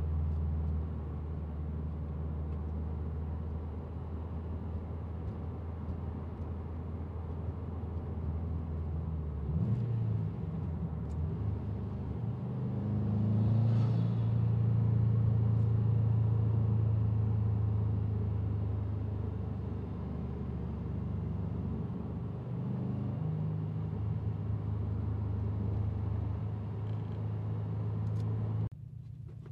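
Subaru WRX STI's turbocharged flat-four engine with an AEM cold air intake, running steadily. About halfway through its note gets louder and a little higher for several seconds, then settles back.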